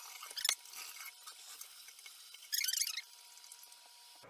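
A click, then a brief high squeak a little past the middle, as the kitchen tap is turned over to feed the water ionizer; a faint steady tone runs underneath.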